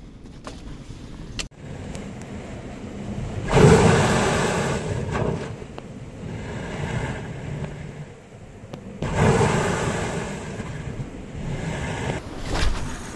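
Sea waves washing into a rocky gully, with two big surges, one a few seconds in and another about three-quarters of the way through, each fading off into a steady hiss of water.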